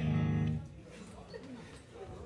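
Electric guitar through its amplifier: one chord struck once, ringing for about half a second before it is cut off, followed by faint talk in the room.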